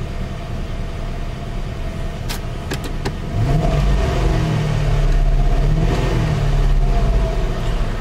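Car engine heard from inside the cabin, idling, then revved with the accelerator from about three seconds in and held at raised revs for several seconds before easing off near the end. A few light clicks come just before the rev.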